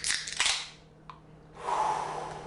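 Pull tabs on several Pabst Blue Ribbon beer cans popping open, sharp clicks with a bright fizzing hiss for about half a second, then a single click about a second in and more hissing near the end.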